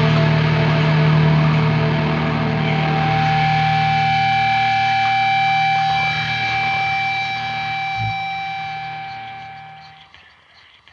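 Closing bars of a rock song: sustained, effects-laden distorted electric guitar chords ringing on, fading out over the last four seconds. A single low thump sounds about eight seconds in.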